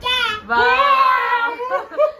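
A young child's loud, high-pitched, drawn-out playful cry, sung rather than spoken: a short call, then one held for about a second with a slight waver.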